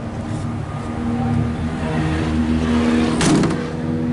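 A motor vehicle's engine running nearby with a steady low hum that grows a little louder, then a brief whoosh about three seconds in.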